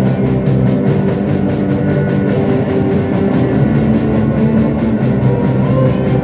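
A live rock band playing: a drum kit keeps a quick, even beat of hits, about six or seven a second, under guitars.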